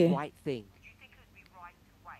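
Speech: a voice finishing a spoken question in the first half second, then only faint, brief voice fragments over quiet room tone.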